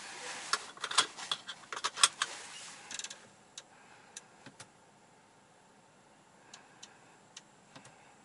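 Clicks from a Mercedes centre-console touchpad controller being pressed and worked: a quick run of sharp clicks over a hiss in the first three seconds, then the hiss stops and a few faint single clicks follow.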